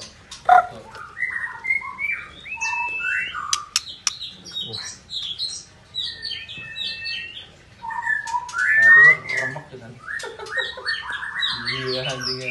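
White-rumped shama (murai batu), a white 'panda' bird, singing: a fast, varied run of whistles, chirps and chattering notes with sliding whistled phrases, loudest about nine seconds in.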